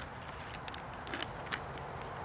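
Plastic packaging of an MRE pound cake crinkling and crackling in the hands as it is opened and handled: a few short crackles in the middle, the sharpest about a second and a half in, over a faint steady outdoor hiss.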